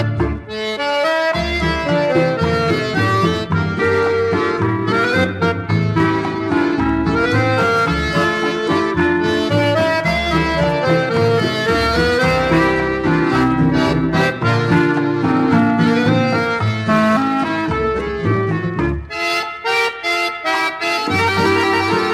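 Instrumental accordion music: an accordion carries the melody over a steady bass and rhythm accompaniment, with the bass dropping out briefly near the end.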